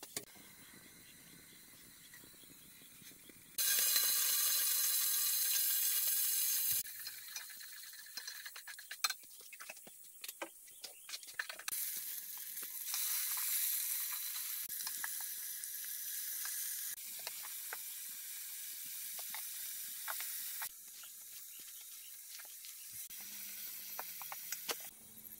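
A wood cooking fire under a pot of simmering broth: steady hissing with scattered crackles and sharp clicks. The sound comes in short pieces that start and stop abruptly, with a loud steady hiss for about three seconds near the start.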